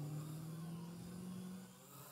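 Kmart Stunt X8, a Syma X8-style brushed-motor quadcopter, hovering with its motors and propellers giving a steady hum. The pitch eases slightly lower and the hum fades near the end.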